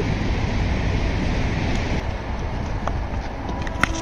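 Steady rumbling wind noise on the microphone, with a faint click near the end.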